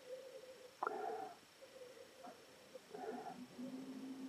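Faint sniffing and breathing into a glass of red wine as it is nosed, with two short sniffs about a second in and about three seconds in. A faint low steady tone comes in near the end.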